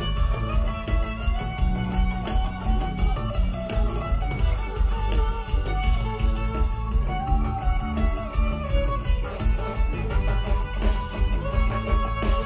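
Live jam-band music from a full band: guitars over bass and drums keeping a steady beat, with a lead line sliding up and down through the middle.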